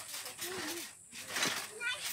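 Voices in the background, with a child's brief high-pitched call near the end.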